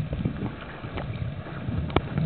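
Muffled underwater noise picked up by a camera held below the surface, water moving over it, with scattered short knocks and a sharper knock near the end.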